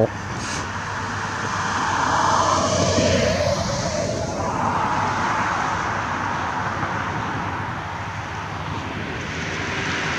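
Passing road traffic: a rush of tyre and engine noise that builds over the first few seconds, dips briefly near the middle, then swells again and eases.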